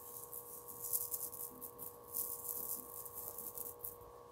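Small aquarium gravel pellets trickling from fingers and rattling into a shag rug, in about five short crisp bursts.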